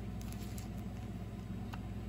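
A few faint clicks and crinkles as a small plastic packet is handled in the fingers, over a low steady hum.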